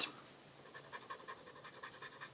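Stampin' Write marker tip stroking up and down on cardstock, a faint, even scratching of several quick strokes a second.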